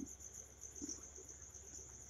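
Faint, steady, high-pitched pulsing trill, like an insect chirping in the background, with a brief soft low sound right at the start.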